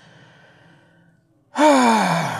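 A man's faint breath, then a loud, voiced sigh starting about one and a half seconds in, falling in pitch as it trails off.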